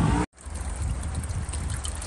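Wind rumbling on the microphone outdoors, a steady low buffeting with no other distinct sound, broken by a sudden short dropout to silence about a quarter second in.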